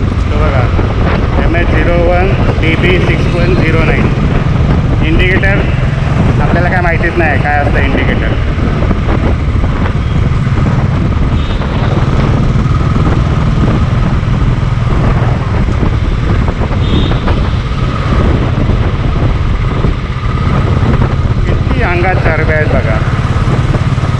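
Motorcycle engine running steadily while riding in traffic, heard from the rider's position with a constant low drone under road and wind noise. A voice comes through a few times.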